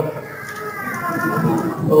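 Speech only: a higher-pitched voice, quieter and further off than the main male speaker's.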